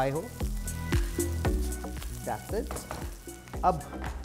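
Diced onion, green capsicum, garlic and green chilli sizzling in hot oil in a non-stick wok over a high gas flame, stirred with a silicone spatula.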